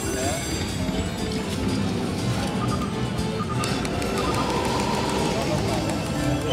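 Slot machine playing its reel-spin music and sound effects during a $12 spin, with a few short beeping tones in the middle, over casino background noise.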